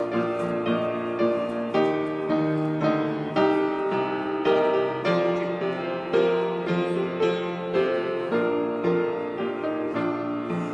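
Piano playing a hymn's introduction: chords struck at a steady pace, each fading before the next, ahead of the singing.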